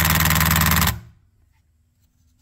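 Cordless impact driver hammering a socket on a chainsaw bar-mount nut, a rapid loud rattle that stops about a second in.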